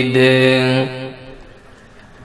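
A man's amplified voice holds a long, steady note of melodic Arabic recitation and breaks off a little under a second in. A fading echo and quiet hall background follow.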